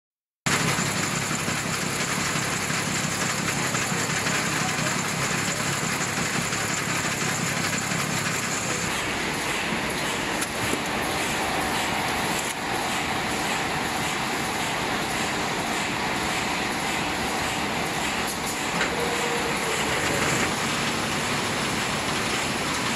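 Disposable poly plastic apron making machine running with a steady, even noise that starts about half a second in.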